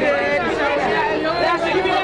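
Several voices talking and calling over one another: overlapping chatter with no single clear speaker.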